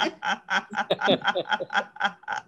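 People laughing at a joke, chuckling in quick, short, repeated bursts.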